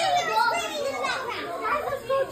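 Several young children talking and calling out over one another.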